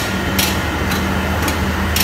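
A steel hospital stretcher is wheeled along a tiled corridor, giving a short sharp click about twice a second over a steady low hum.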